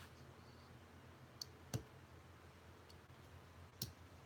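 Near silence over a low steady room hum, broken by four short, faint clicks, the loudest a little before halfway and another near the end.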